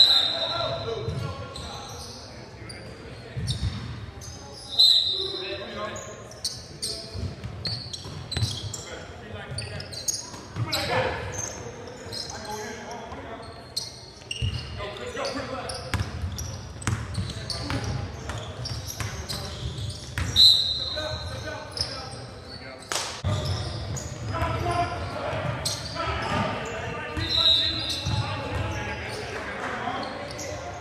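Basketball game on a hardwood gym floor: a ball dribbling with repeated sharp bounces, sneakers squeaking briefly a few times, and players shouting to each other, all echoing in the large hall.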